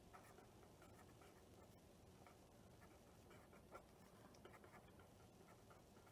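Faint scratching of a ballpoint-style pen writing on a sheet of paper on a clipboard, in many short irregular strokes.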